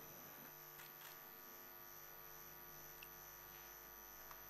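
Near silence: a faint, steady electrical mains hum, with a few faint ticks.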